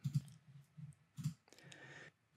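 A few faint computer mouse clicks, spaced apart, as a dialog is closed and a menu item is chosen.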